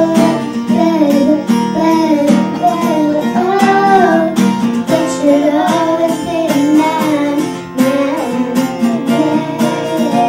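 Young girls singing a melody over a steadily strummed acoustic guitar.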